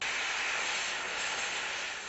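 Gas cutting torch hissing steadily as it burns through a steel nut on the rail track, a sudden, even rush of noise with no tone in it.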